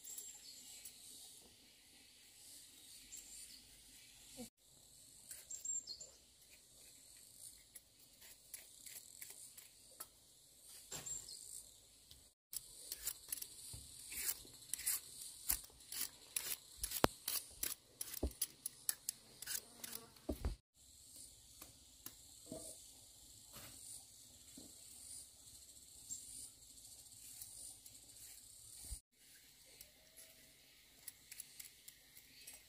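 Knife cutting and stripping the skin off cassava roots: a run of short sharp cuts and scrapes, thickest in the middle of the stretch. Insects chirp steadily in the background.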